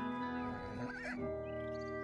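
Background music of held notes, with a short, wavering horse whinny about a second in.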